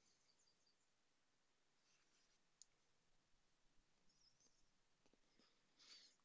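Near silence: room tone, with one faint click about two and a half seconds in.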